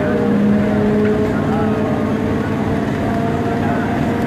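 Steady running noise of a suburban electric train heard from inside a carriage: the rumble of wheels on the rails with a low steady hum, and passengers' voices in the background.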